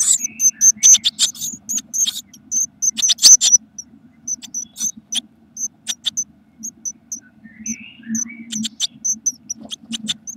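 Blue tit nestlings begging in a nest box: a busy run of loud, scratchy calls during the first three or four seconds, then thin, high-pitched cheeps repeated a few times a second. A low steady hum runs underneath.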